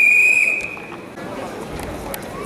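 Referee's whistle in a wrestling bout: one short, steady blast lasting under a second at the very start, heard over arena crowd noise and voices.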